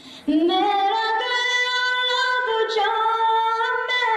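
A naat sung by a single high voice with no instruments. A phrase begins about a third of a second in with an upward slide into long, held, ornamented notes.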